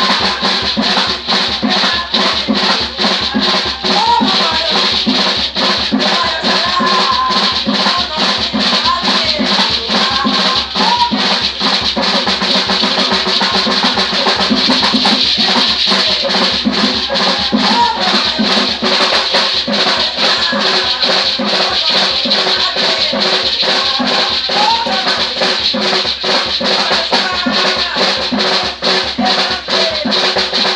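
Terecô ritual music: a hand drum beaten in a fast, steady rhythm with gourd rattles shaken along with it, and voices singing over the percussion.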